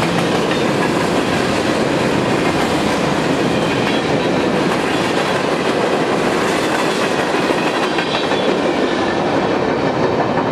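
Freight train cars rolling past at speed on the rails: a loud, steady noise of wheels and cars going by. The last cars clear right at the end.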